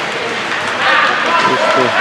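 Ice rink game noise: skates scraping the ice under a steady wash of sound, with voices of players and spectators calling out, one voice coming through more clearly in the second half.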